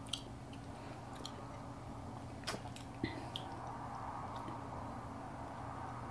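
Faint mouth sounds of a person sipping a carbonated soft drink from a glass bottle and tasting it, over quiet room tone: a few soft clicks and smacks, the clearest about two and a half seconds in.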